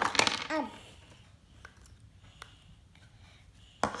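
Light clicks and taps of plastic Play-Doh molds and tools against a tabletop: a few faint scattered ticks, then one sharper knock near the end.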